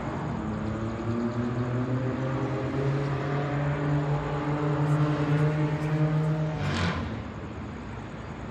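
A heavy vehicle's engine running with a low, steady drone that slowly builds. It stops suddenly about seven seconds in, followed by a short hiss.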